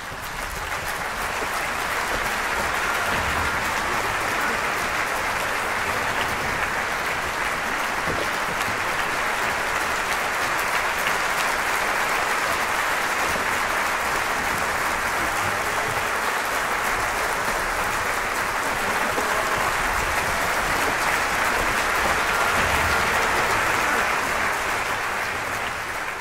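Audience applauding: the clapping builds quickly at the start, holds steady, swells slightly near the end and then eases off.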